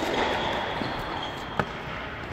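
Tennis ball impact on an indoor court: a single sharp knock about a second and a half in, echoing in the hall.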